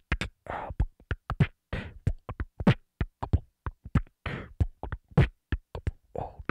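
Solo beatboxing into a handheld microphone: a fast, uneven run of short sharp mouth percussion hits mixed with longer breathy hisses, with brief silent gaps between them.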